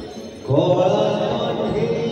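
A voice chanting through the stage sound system over background music, coming in loudly about half a second in.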